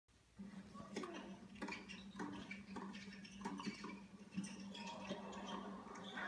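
Tennis ball strikes in a quick doubles rally, racquets hitting the ball about every half second, heard through a television speaker. A steady low hum runs underneath and stops near the end.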